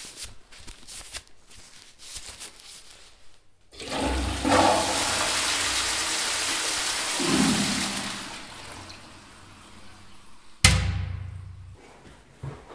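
A toilet flushing: a loud rush of water starting about four seconds in, swelling, then draining away over several seconds. Near the end, a single sharp bang that dies away.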